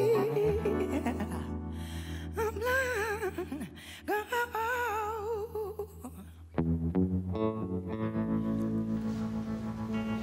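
Live soul ballad ending: a woman sings wordless, wavering vibrato phrases over held keyboard and guitar chords. About six and a half seconds in, the band strikes a final sustained chord that rings on.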